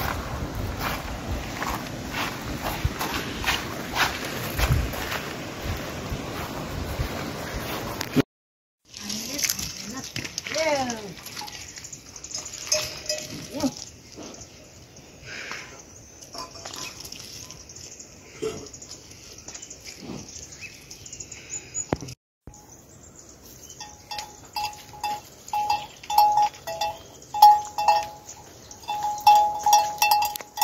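Steady rain for the first eight seconds. Then a few animal calls from livestock, and in the last seconds livestock bells clanking over and over, several strikes a second.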